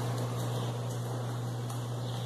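A steady low hum under a faint even hiss, with no distinct events.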